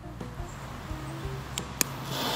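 Faint background music, with two sharp clicks near the end as a lighter is struck at the fuse of a small firework rocket.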